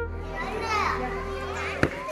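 Children's voices chattering and calling at play, several at once, over held music tones that stop with a sharp click near the end.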